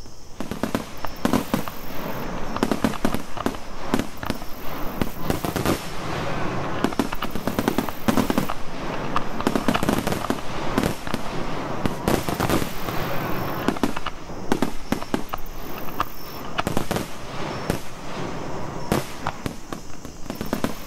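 Recorded battle sound of massed musket fire: many overlapping gunshots crackling irregularly and without a break, over a steady noisy background, at a fairly even level throughout.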